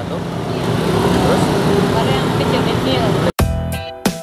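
Steady roadside traffic noise with faint voices. A little over three seconds in it breaks off abruptly and electronic background music with a strong beat starts.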